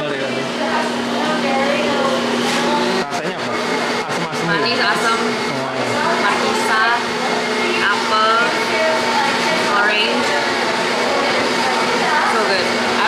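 Voices talking, with a steady low hum running underneath.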